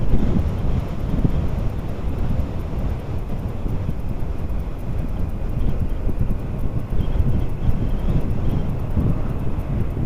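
Wind rushing and buffeting over the microphone of a moving motorcycle, with road and engine noise blended underneath. It is steady, with no distinct engine note standing out.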